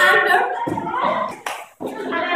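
Several children's voices talking over one another in a small room, with a sharp click about one and a half seconds in. The sound breaks off abruptly just before the end.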